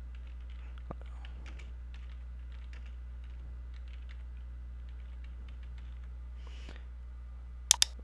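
Typing on a computer keyboard: a run of light key taps, then a sharp double mouse click near the end. A steady low hum runs underneath.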